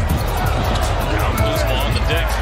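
Basketball game sound on the court: a ball bouncing on hardwood among players' movement, over steady arena crowd noise and music.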